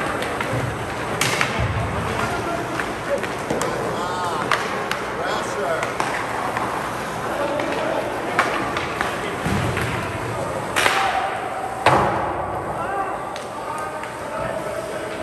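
Ice hockey rink during play: indistinct spectator voices under a series of sharp knocks and cracks from sticks, puck and boards. The loudest knock comes near the end and rings briefly.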